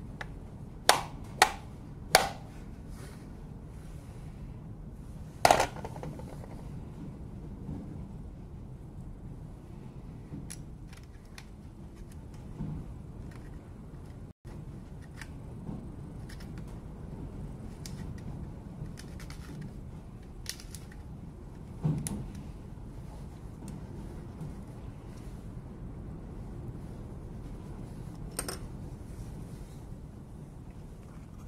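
Sharp clicks and knocks of a screwdriver against an angle grinder's plastic and metal housing as it is handled and reassembled. There is a quick cluster of clicks in the first couple of seconds, another about five seconds in and one more about twenty-two seconds in, over a low steady background.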